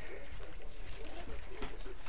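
A litter of puppies eating soft food together from one dish, with wet lapping and smacking and many small squeaks and whimpers.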